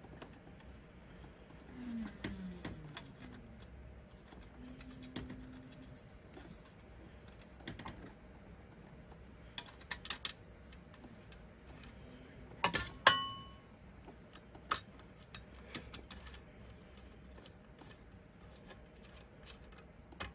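Scattered small metallic clicks and taps as a replacement razor blade and its screw are fitted by hand to a Husqvarna Automower's steel blade disc with a screwdriver. The loudest is a sharp metal clink a little past the middle that rings briefly.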